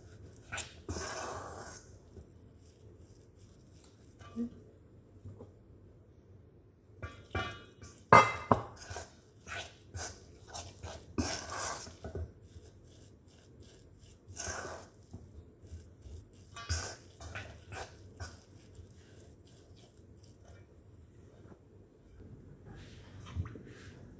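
A fork scraping and clinking against a stainless steel mixing bowl as a thick fish-paste batter is stirred, in irregular short strokes with pauses between.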